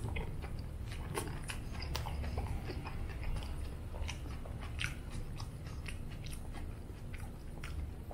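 Close-up chewing of a mouthful of toasted flour-tortilla burrito, with many small wet clicks and smacks of the mouth scattered throughout. A low steady hum runs underneath.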